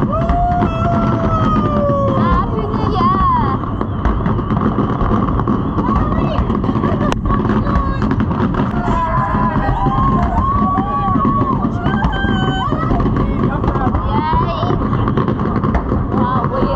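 Fireworks display heard through a crowd of spectators: a continuous low rumble of bursts with one sharp crack about seven seconds in, under people calling out in long gliding shouts.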